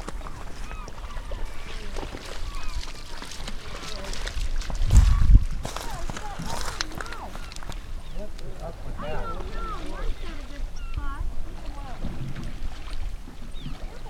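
A dog whining in short, high, rising-and-falling whimpers, in clusters, with a loud low rumble about five seconds in.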